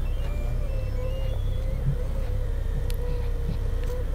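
Doosan 4.5-ton forklift engine running steadily, heard from inside the cab: a constant low rumble with a steady whine above it while the forklift creeps forward with a rebar load.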